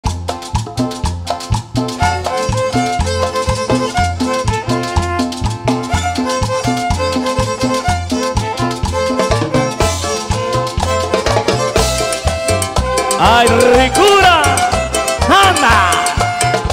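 A live band playing upbeat Latin dance music with electric guitars and a steady, repeating bass beat, amplified through the hall's speakers. Instrumental, with a sliding melodic line joining in the last few seconds.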